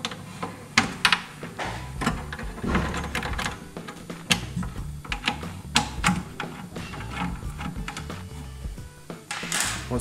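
Metallic clicks and taps of a size 3 Allen key working two screws out of a plastic housing inside an aluminium pannier, the key knocking in the screw heads and against the case. Background music runs underneath.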